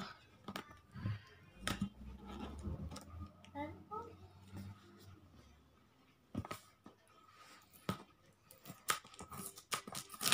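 Fingers picking and scratching at the sealed edges of a cardboard microphone box, giving faint scattered clicks and scrapes as the seal refuses to give.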